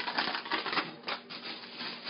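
Plastic food storage bag holding cornmeal crinkling and rustling as it is handled, with a burst of crackle at the start that then settles into lighter rustling.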